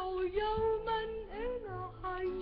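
Background music: a high solo voice singing long notes that slide up and down.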